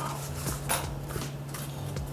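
A cardboard box being opened by hand: stiff cardboard flaps scraping and rustling, with a few light knocks, over a low steady hum.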